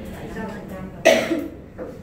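A person coughs once, a short, sharp cough about a second in.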